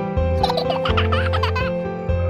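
Gentle children's background music with a short, high-pitched, childlike giggle that starts about half a second in and lasts about a second.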